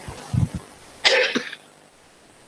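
A short, low sound, then a single sharp cough about a second in.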